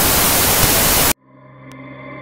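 Television-style white-noise static, a loud, even hiss used as an editing transition, cutting off suddenly about a second in. Faint steady tones then begin to fade in.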